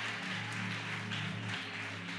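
Soft background music of sustained low chords held steadily under a pause in the preaching, with faint room and congregation noise.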